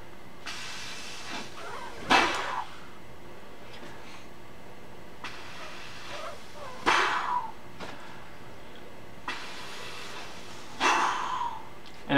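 Breath puffed out of inflated cheeks through pursed lips three times, about four to five seconds apart. Each puff is a short rush of air that falls in pitch, and fainter steady blowing runs between them. This is the cheek-puff step of a circular-breathing exercise for the clarinet.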